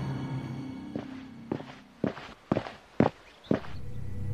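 Footsteps, about two a second, starting about a second in, while low background music fades out.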